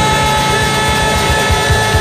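Live rock band holding a loud, sustained distorted closing chord over rapid low drum hits.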